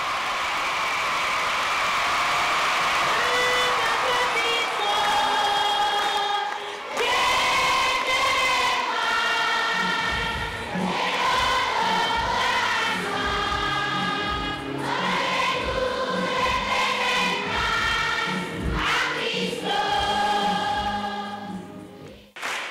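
A large children's choir singing together, rising out of crowd noise over the first few seconds. A low, regular beat runs under the singing from about ten seconds in.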